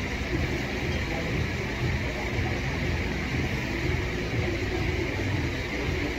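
Steady indoor room noise with a low rumble and a hiss, with no distinct events.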